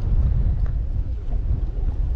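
Steady low rumble of wind buffeting the microphone, with a couple of faint clicks as baits are sorted in an open plastic tackle box.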